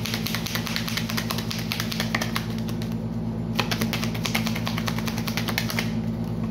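A deck of tarot cards shuffled by hand, a rapid run of light clicks as the cards slap together, with a brief break a little after halfway. A steady low hum runs underneath.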